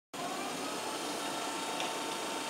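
Wood lathe running with a bowl blank spinning on it: a steady motor hum with a faint whine.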